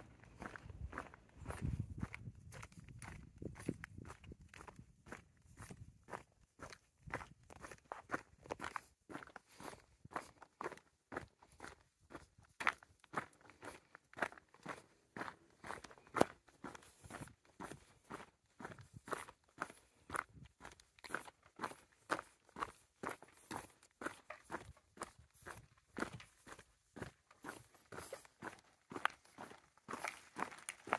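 Footsteps of a person walking at a steady, even pace on a concrete road, each step a short scuff.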